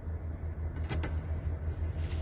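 Heavy truck's diesel engine idling with an even low throb, heard from inside the cab. A couple of light clicks come about halfway through.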